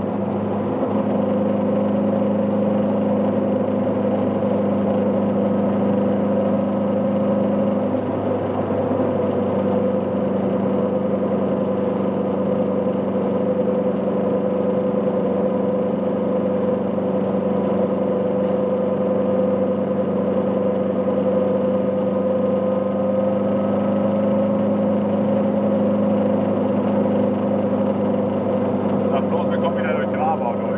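Goggomobil microcar's air-cooled two-stroke twin engine running at a steady cruising speed, heard from inside the small cabin. The engine note holds level with little change in pitch.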